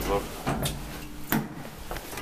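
Elevator door being opened and handled on an old Kone traction lift: sharp clunks and knocks about half a second in and again past one second, over a faint steady hum.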